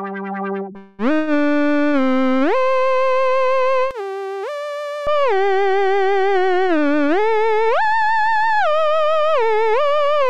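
Tiny Voice software synthesizer playing a theremin-imitation lead preset: a single sustained tone gliding smoothly up and down between notes with a wavering vibrato. It follows the last notes of a different patch in the first second.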